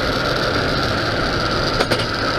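Steady road and engine noise of a car driving, heard from inside the cabin, with a short click near the end.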